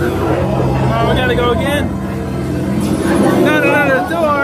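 Haunted-maze soundscape: a loud, steady low drone with high, wavering vocal cries over it, once about a second in and again near the end.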